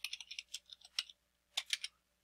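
Typing on a computer keyboard, a password being keyed in: a quick, irregular run of keystrokes, a short pause a little past the middle, then a few more keystrokes.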